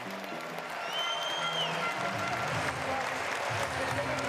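Music playing over an arena crowd's applause.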